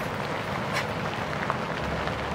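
Steady rain on the canvas roof of a yurt, an even hiss with a few faint ticks of drops.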